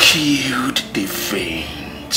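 A man crying, a sharp intake of breath followed by several short, broken sobs.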